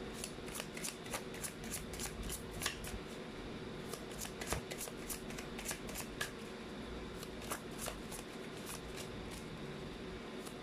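A deck of Lo Scarabeo Egyptian Tarot cards being shuffled by hand: quick, light clicks and flicks of card edges, irregular at several a second.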